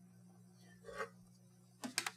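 Quiet kitchen with a faint steady hum, then a few sharp clicks near the end as a metal utensil knocks against a stainless steel pasta pot.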